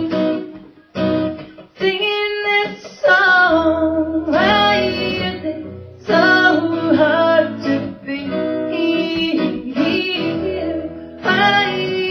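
A woman singing with her own acoustic guitar accompaniment, a folk song with strummed chords under the voice.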